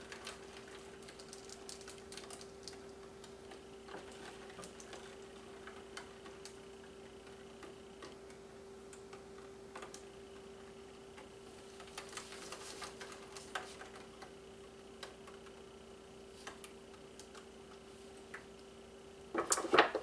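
Faint, scattered clicks and light taps as a wet acrylic-poured canvas is tilted and handled by gloved hands, with a few short clusters. A steady low hum runs underneath.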